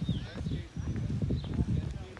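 Footsteps walking on an asphalt path, with short bird chirps above them.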